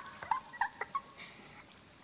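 A woman's short, high-pitched giggles: four or five quick squeaks in the first second, then quiet.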